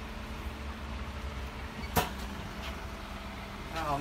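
A vertical form-fill-seal packing machine runs with a steady low hum. It gives one sharp clack about two seconds in, and a voice begins just at the end.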